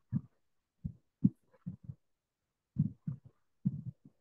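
Soft low thumps, about a dozen, short and irregular, falling in small clusters with silence between.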